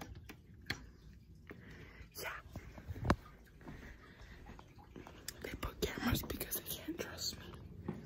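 A person whispering, with scattered clicks and knocks, the sharpest about three seconds in.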